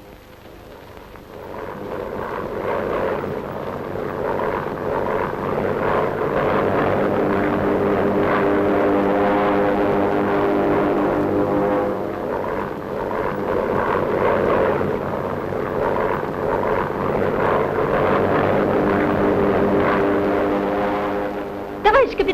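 Propeller aircraft engine droning steadily at one pitch, swelling over the first few seconds, then holding.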